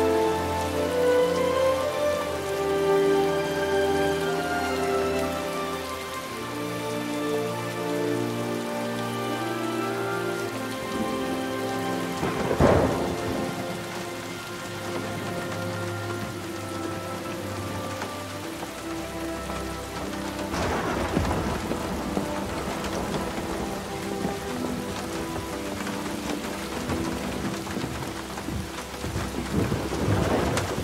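Heavy rain falling steadily, with a sharp thunder crack about 13 seconds in and further rolls of thunder near 21 seconds and at the end, under a slow orchestral film score of held notes that fades back in the second half.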